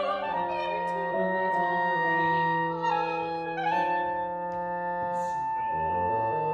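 Classical instrumental music from the opera's score: long held wind-like notes that shift in pitch every second or two.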